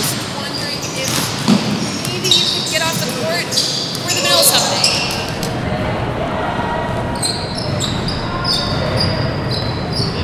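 A basketball bouncing on a hardwood gym floor, echoing in a large hall, with voices around it and short high squeaks in the last few seconds.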